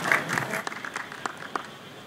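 Audience applauding: scattered claps that thin out and fade away.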